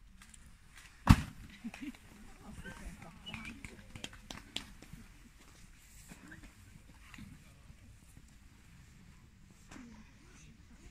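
A single sharp thump about a second in, by far the loudest sound, followed by faint chatter from the onlookers and a few light knocks and rustles.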